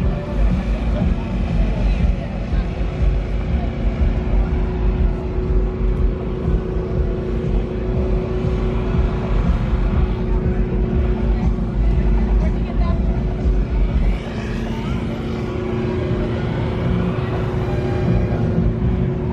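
A car engine running close by, a deep rumble with a steady hum that drops away about fourteen seconds in, with voices in the background.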